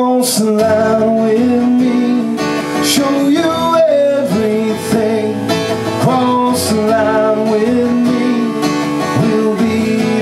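Live solo acoustic guitar strummed under a man's singing voice: a country song.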